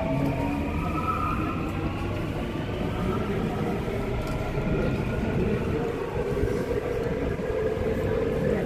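Seoul Metro Line 9 subway train running, heard from inside the car: a steady rumble of wheels on track with several motor whines slowly rising in pitch as the train gathers speed.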